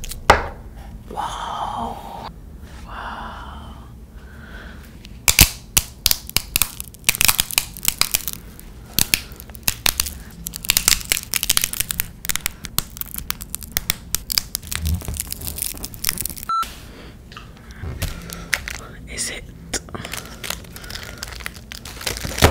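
Plastic glow sticks being bent and cracked close to the microphone, their glass inner vials snapping in quick runs of sharp crackling clicks. The clicking starts about five seconds in and comes in clusters.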